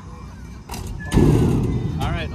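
A basketball knocking against a wooden hoop board: a sharp knock, then about a second of loud rumbling from just past a second in.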